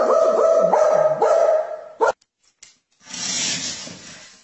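A dog barking in quick succession, a new bark every third of a second or so, stopping about two seconds in. After a short silence a rushing noise follows near the end.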